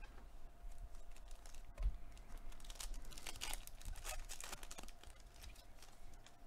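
Foil wrapper of a Panini Contenders football card pack crinkling and being torn open: a soft bump about two seconds in, then a quick run of crackles from about three to five seconds in.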